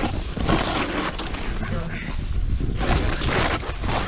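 Snowboard sliding and scraping over a thin layer of early-season snow, brushing through grass stalks that stick up through it: a steady scraping hiss over a low rumble.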